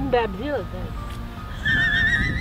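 A brief voice at the start, then a horse whinnying, a high wavering call starting past the middle and running on.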